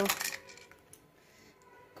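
A brief clatter of small plastic toys knocking together in a pile during the first half-second, then near silence.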